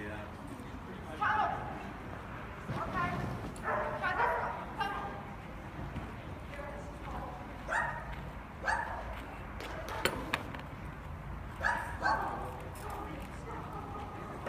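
A dog barking in short barks, singly and in quick runs of two or three, about ten in all.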